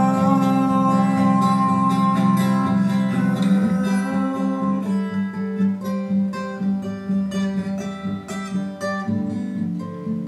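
Acoustic guitar playing: a held chord rings for the first few seconds, then single notes are plucked one after another.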